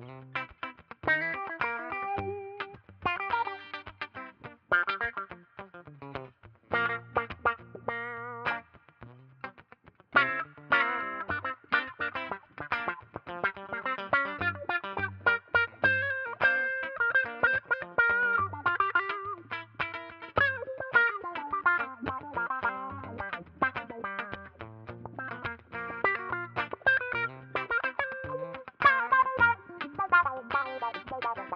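Electric guitar, a Telecaster, played through a Mayfly Le Canard envelope filter (auto-wah): each note opens into a wah that is set off by how hard the strings are picked. Short, choppy chords and single notes with gaps between them, a brief pause about nine seconds in, then busier playing.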